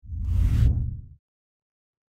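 Transition whoosh sound effect accompanying a graphic wipe: one deep swoosh lasting just over a second, swelling and then cutting off.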